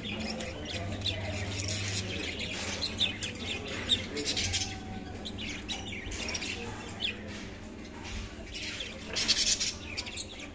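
Budgerigars chattering: a continuous stream of short chirps and warbles from several birds, with a louder burst of calls about nine seconds in.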